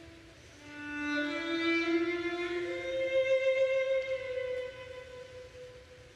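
Slow music led by a violin playing long held notes, swelling about a second in, moving up to a higher sustained note partway through, then fading near the end.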